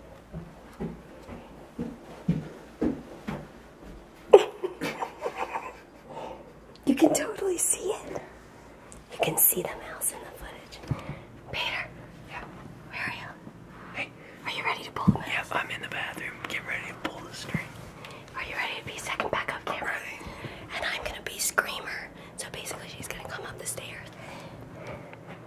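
People whispering, with hissy breathy bursts throughout. A few soft taps come in the first few seconds.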